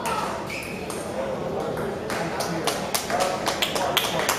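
Table tennis ball clicking sharply off paddles, table and floor at the end of a rally, the clicks sparse at first and then coming quickly one after another in the second half. A murmur of spectators' voices runs underneath in a large hall.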